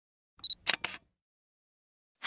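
Short logo-intro sound effect: a brief high beep about half a second in, then two quick sharp clicks close together.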